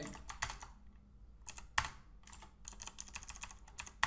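Typing on a computer keyboard: irregular keystroke clicks, a quick run at the start and then scattered single presses.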